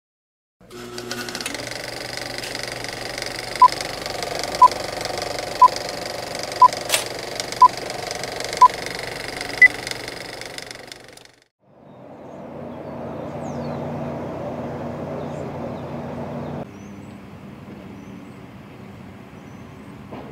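Mechanical running noise with six short beeps one second apart, then a higher-pitched beep. After a brief drop, a second stretch of engine-like rumble runs for about five seconds before a sudden cut to a quieter steady outdoor background.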